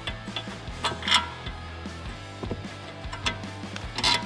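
Background music, with a handful of short clicks and knocks from suspension parts being handled as the sway-bar end link is moved back into place; the sharpest comes a little after a second in.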